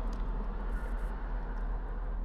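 Steady outdoor background noise: a continuous low rumble with a hiss over it.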